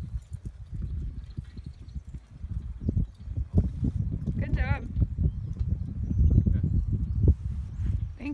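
A mustang's hooves thudding on loose sandy arena dirt as it is ridden, with a horse whinnying once, briefly and high, about halfway through.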